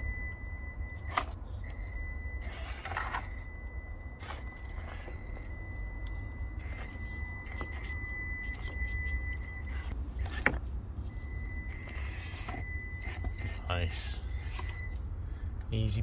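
A Traxxas TRX4M mini rock crawler's small electric drive climbing a rock slope at low throttle. It makes a steady high whine that drops out briefly a little after ten seconds, comes back, and stops near fifteen seconds. Scattered clicks and scrapes of the tyres and chassis on stone run through it, the loudest a sharp knock a little after ten seconds.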